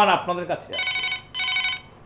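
Corded desk telephone ringing: two short rings, each about half a second long, with a brief gap between them.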